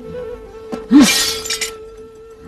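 Something shattering: a sudden loud crash about a second in, breaking up into a brief spray of sharp bits, over background music holding a steady note.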